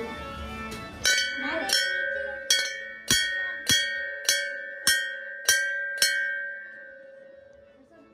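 A hanging Hindu temple bell struck by hand nine times in a steady rhythm, a little under two strikes a second, starting about a second in; its ringing tone then fades away over the last two seconds.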